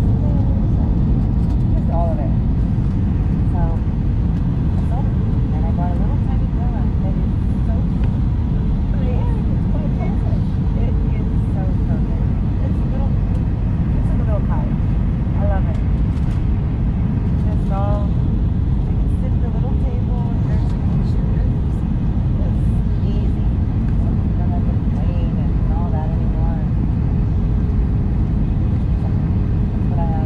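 Steady low rumble of cabin noise inside an Airbus A319 airliner on descent: engine and airflow noise heard through the fuselage.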